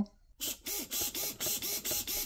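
KST CM653 low-profile digital servo, with a coreless motor and metal gears, sweeping its arm rapidly back and forth in a speed test. Each sweep is a short buzz, about four a second, starting about half a second in.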